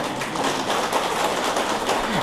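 Audience applauding: many quick hand claps running together into a steady patter.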